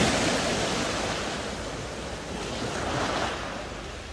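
Small sea waves breaking and washing up a coarse pebble beach. The hiss is loudest at the start and fades, then a second wave surges in about two and a half seconds in.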